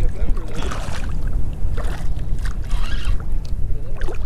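Steady low wind rumble on the microphone, with several brief splashes as a hooked flounder thrashes at the surface of shallow water.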